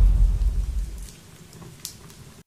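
A deep rumble, the tail of a boom sound effect, dying away over about a second, with a faint click near the end.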